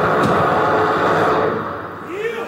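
Loud distorted guitar and amplifier noise from a live grindcore band ringing out as a song ends, without drums. It fades away over the last half-second.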